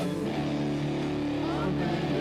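Worship band playing a song, guitar and voices sustaining steady chords.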